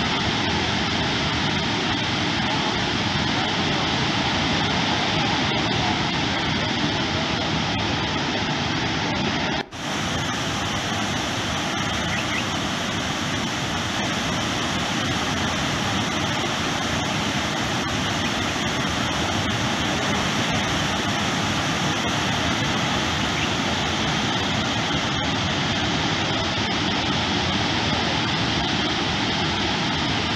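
Steady rushing of floodwater pouring through a dam's open spillway crest gates. It breaks off for an instant about ten seconds in, then carries on.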